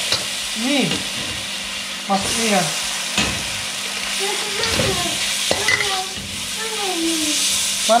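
Egg and noodles frying in a hot steel wok, a steady sizzle, as a metal spatula stirs and scrapes, with a few sharp knocks of the spatula against the pan. Thin white noodles are added partway through and keep frying.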